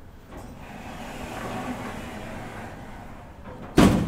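Elevator's automatic sliding doors closing: a rushing slide for about three seconds, ending in a loud bang as the doors shut just before the end.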